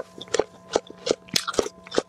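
A person chewing crunchy food close to a clip-on microphone, with a crisp crunch about three times a second.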